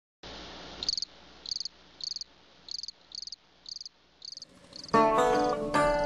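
A cricket chirping: about eight short, high chirps, a little under two a second, over a faint hiss. About five seconds in, loud plucked-string blues music starts.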